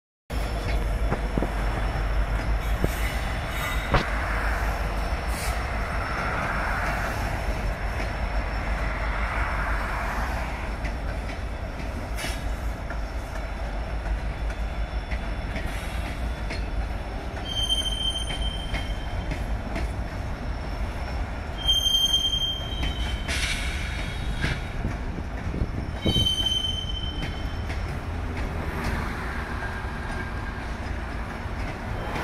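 Norfolk Southern freight train rolling past with a steady low rumble of diesel locomotives and cars on the rails. Short high-pitched wheel squeals sound three times in the second half.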